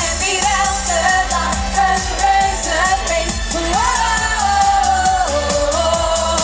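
A woman singing a pop song live into a handheld microphone over a loud pop backing track with a steady beat. She holds one long note about four seconds in, then drops in pitch.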